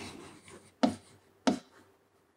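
Felt-tip marker writing on a whiteboard: three short separate scratchy strokes as letters are drawn.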